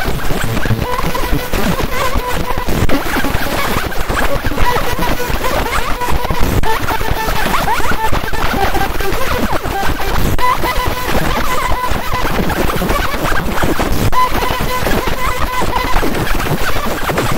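A JPT 50 W fiber laser marker engraving fired red clay: a loud, dense crackling as the pulsed beam ablates the surface, with a high steady tone that comes and goes as the beam scans.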